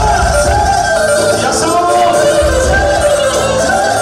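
Loud live dance music led by a clarinet playing a wavering, ornamented melody over bass and a steady beat.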